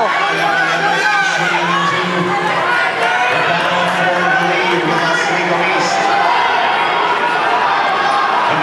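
Crowd of spectators cheering and shouting to runners during a race, many voices at once, at a steady level.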